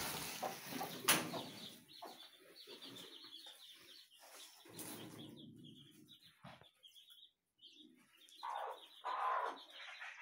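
Chicks peeping in short, high cheeps, several a second, while feeding with their mother hen. There is a sharp click about a second in, and a few louder, lower hen clucks near the end.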